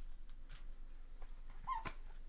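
Foil-wrapped trading-card packs handled in gloved hands: faint crinkles and ticks, then a short squeak and a sharp tap near the end as a pack is set down on the table.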